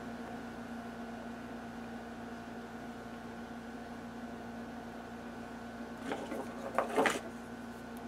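Playing cards being slid and nudged into line on a board, with a few brief scrapes about six to seven seconds in, over a steady background hum.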